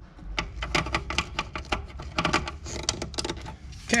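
Wires being handled and tugged in a plastic spa control box: a quick, irregular run of small clicks and rustles over a low rumble.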